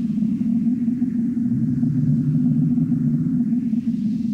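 Low, steady electronic drone from an experimental ambient electronic track, with a faint grainy texture above it. The drone settles slightly lower in pitch about a second and a half in.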